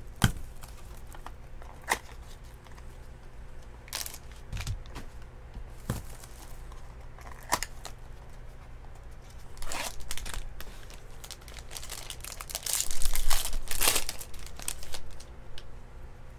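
Trading-card packaging being opened by hand: cellophane wrap and a foil pack wrapper crinkled and torn, with scattered sharp crackles. The longest, loudest stretch of crinkling and tearing comes about three-quarters of the way through.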